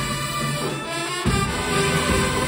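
High school marching band's brass section (trumpets, horns and sousaphones) playing with percussion. The bass and the heavy beats drop out briefly and come back in hard a little over a second in.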